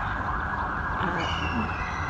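Steady background noise of the open-air city surroundings, with a faint high tone that comes in about a second in.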